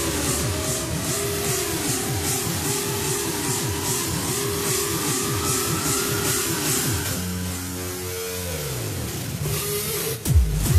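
Trance music build-up: a synth riser climbs steadily in pitch over a repeating beat. About seven seconds in, the beat thins out into held synth tones.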